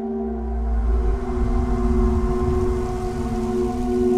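Horror trailer score: a sustained eerie drone of several held tones, with a deep rumble coming in at the start and a rising hiss building over it.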